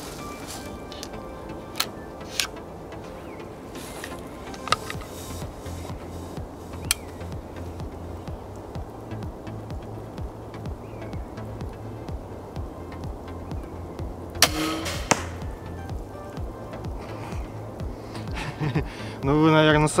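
A TenPoint crossbow fitted with recurve limbs being shot: a few light clicks as it is handled and loaded, then, about fourteen seconds in, one loud crack of the release with a brief ringing that carries the noise of the limbs themselves and of the crossbow's body.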